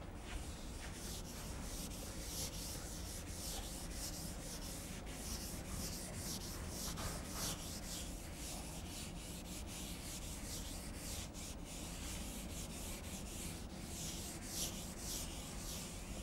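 A felt blackboard duster rubbing chalk off a chalkboard in quick, repeated back-and-forth strokes.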